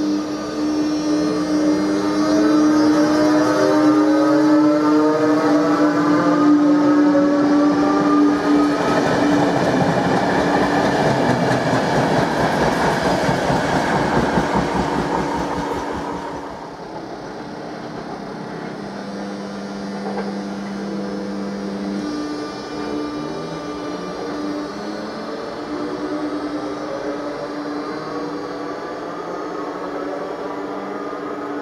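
Czech Railways class 362 electric locomotive hauling passenger coaches as it gets under way: a whine from the traction drive rises steadily in pitch over the first several seconds. The train then passes loudly with wheel-on-rail noise, and a little past halfway the sound drops to a quieter steady hum as it moves off.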